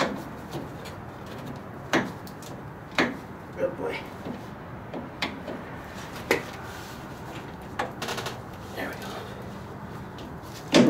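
Phillips screwdriver turning out a slider screw at the front of a snowmobile skid rail: scattered sharp clicks and knocks of the tool on the screw and the metal rail, with a short rattle about eight seconds in.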